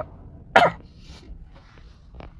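A man's single short cough about half a second in.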